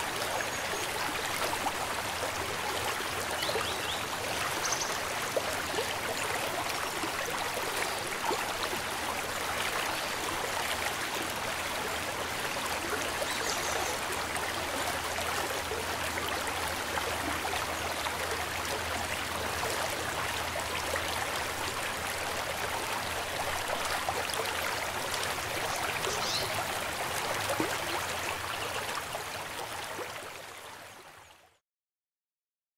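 Steady rushing of a shallow river running over rocky riffles, a continuous even wash of water noise.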